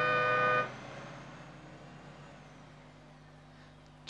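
Bus horn sounding a long blast of two tones together that cuts off about half a second in. A faint engine rumble then fades away.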